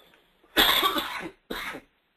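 A man coughing twice, a long cough about half a second in followed by a short one, from a cold.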